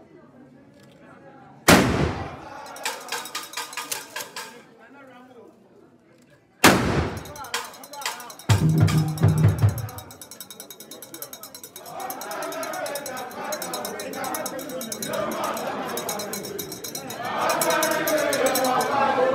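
Two loud sharp bangs, about two and seven seconds in, each ringing on in the hall, followed by a brief low rapid pulsing. From about twelve seconds on, many voices talking, growing louder near the end.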